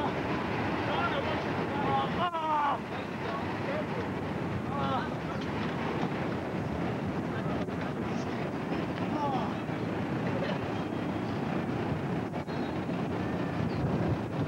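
Steady rushing of wind on a camcorder microphone over outdoor city background noise, with a few brief shouts from people around and several short knocks.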